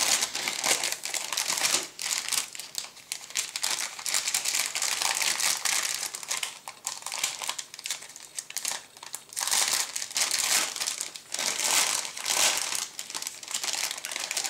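Clear plastic bag around a grey plastic model-kit sprue crinkling as it is handled, in irregular bursts of crackle, quieter for a couple of seconds in the middle.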